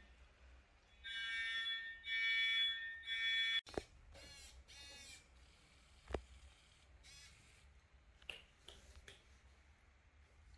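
Electronic fire alarm sounding three long steady beeps, cutting off suddenly; it is the alarm of the model fire-detection system signalling that a fire has been found. A few faint clicks follow.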